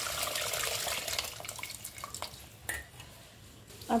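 Tamarind water being poured into a pot of simmering mutton and taro stew: a splashing pour in the first second or so that tails off, followed by a few small clicks and drips.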